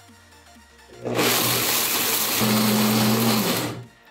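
A Blendtec blender starts about a second in and grinds beans and water into a paste, running loud and steady. A higher motor hum joins about halfway, and the blender cuts off suddenly near the end.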